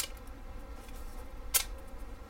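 Two sharp clicks from a Spyderco Endela folding knife as its blade is worked in the hand, one right at the start and one about a second and a half in, with a few faint ticks between.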